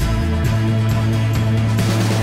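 Background music with drums and a sustained bass line that shifts to a new note about half a second in.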